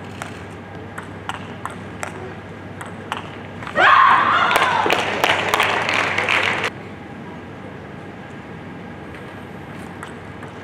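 Table tennis ball being struck back and forth, sharp clicks off the bats and table a few times a second. Near four seconds in, the rally ends with a loud shout and a burst of applause and cheering in the hall, which cuts off suddenly about three seconds later.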